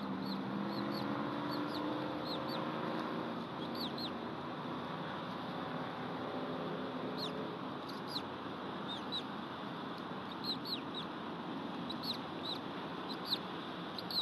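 Bird peeps: short, high calls that each fall in pitch, coming in loose clusters and more often in the second half, over a steady hiss.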